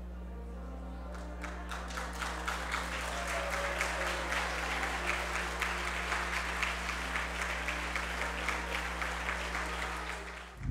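Audience applauding. The clapping starts about a second in and builds to steady applause.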